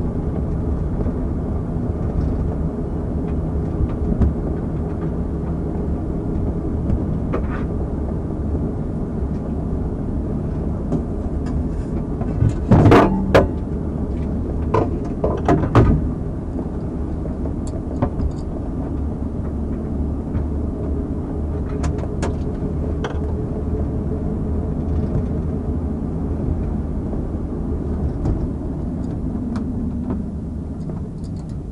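Steady low engine and vehicle rumble inside the back seat of a police car. A few sharp knocks come about halfway through.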